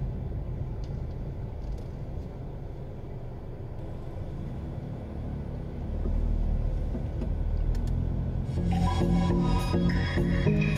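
Car engine and road rumble heard from inside the cabin while driving slowly. The rumble grows louder about six seconds in. Background music comes in near the end.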